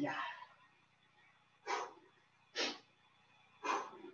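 A man's short, forceful breaths out, three of them about a second apart, from the effort of lunges.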